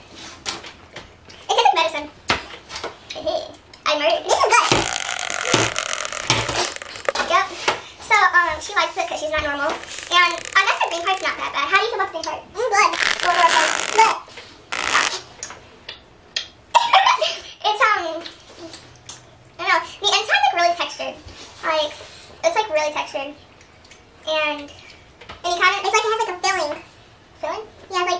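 Girls' voices and laughter, with two longer bursts of loud laughter or giggling, the first about five seconds in and the second about thirteen seconds in.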